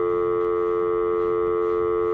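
Telephone dial tone: a steady, unbroken electronic tone on the phone line after the call goes dead, the sign that the other end has hung up.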